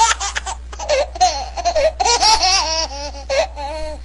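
A person laughing hard and high in quick repeated bursts, as if being tickled or pounced on.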